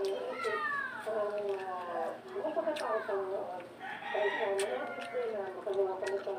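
A rooster crowing, with long drawn-out calls.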